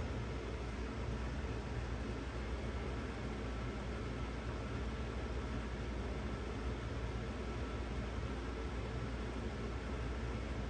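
Steady room noise: an even hiss with a low hum underneath and no distinct events.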